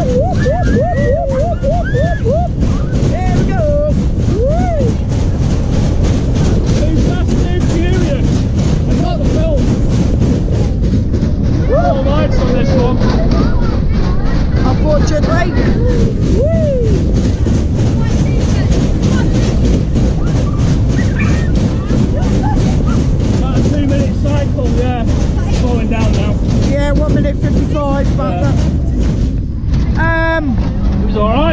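Sobema Matterhorn fairground ride running at speed: a loud, steady rumble of the cars on the track, with fairground music playing. Riders whoop and yell in the first few seconds and now and then after.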